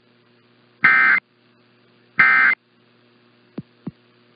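Emergency Alert System end-of-message data tones heard over AM radio: two short, identical buzzy bursts of digital squawk about a second apart, the last two of the three that close an alert. A steady hum runs underneath, and two faint clicks come near the end.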